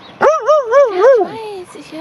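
A dog vocalizing in play: a quick run of about four short yelps, each rising and falling in pitch, then a few lower, falling whines.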